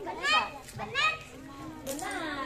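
Young children's high-pitched voices talking and calling out, with two louder calls in the first second, and a short sharp click near the end.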